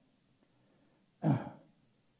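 A man clearing his throat once, a short rasp about a second in; the rest is near silence.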